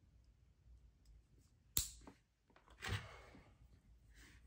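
Handling clicks from wires being fitted into lever-type push-in wire connectors: one sharp snap a little under two seconds in, then a duller click with rustling about a second later.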